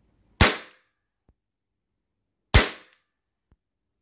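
KJWorks CZ P-09 gas blowback airsoft pistol firing on gas through a chronograph: two single shots about two seconds apart, each a sharp crack that fades quickly.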